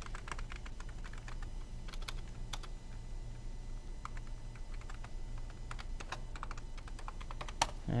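Typing on a computer keyboard, a login name and password being entered: short key clicks in uneven bursts, with one louder click near the end. A low steady hum runs underneath.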